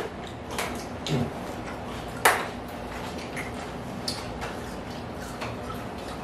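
Scattered small clicks and taps of tableware during a meal, with one sharp click a little over two seconds in.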